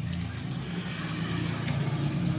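A low, steady engine hum, like a motor vehicle running.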